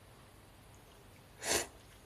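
A short, sharp slurp of thick tsukemen noodles about one and a half seconds in, after a quiet stretch.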